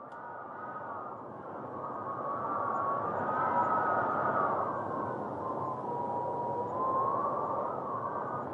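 Howling wind: a rushing noise with a whistling tone that wavers slowly up and down, swelling in over the first few seconds.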